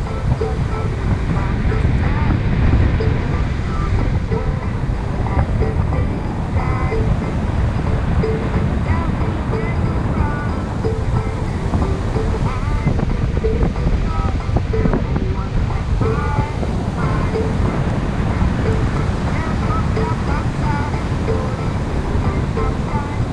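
Loud, steady wind buffeting the microphone of a paraglider in flight, with faint short tones and chirps scattered through it.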